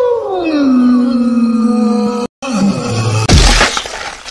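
Cartoon fight sound effects: a drawn-out pitched tone slides down and holds level, then cuts off suddenly. After a brief falling sound and a few words, a loud crash hits a little after three seconds.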